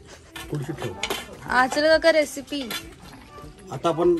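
Stainless steel bowls, plates and spoons clinking and scraping as raw meat is handled, in short clicks. A person's voice rises over it in the middle and is the loudest sound.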